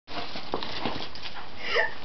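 German Shepherd puppy spinning on wet patio paving: scattered scuffs and taps of its paws and claws, then a short falling cry about three quarters of the way through.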